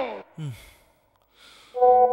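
A man sighs, his voice falling in pitch, followed by a short low vocal sound and soft breaths. Near the end a steady electronic tone starts suddenly.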